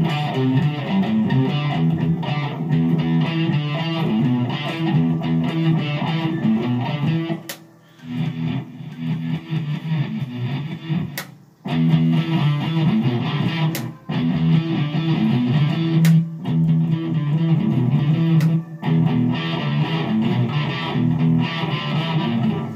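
Electric guitar played through an amplifier with an effects setting, jamming a repeated riff in the low register that breaks off briefly about eight and about twelve seconds in.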